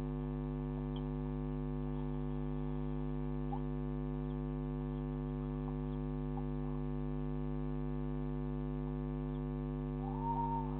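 Steady electrical mains hum with a stack of overtones, picked up by a security camera's microphone. Faint, brief chirps sound now and then over it.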